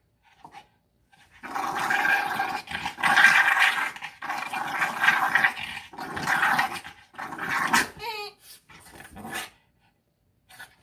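Boston terrier play-growling in long rumbling stretches while being roughhoused, starting about a second and a half in. The growls break off just after eight seconds, with a short wavering cry, and taper off into fainter sounds.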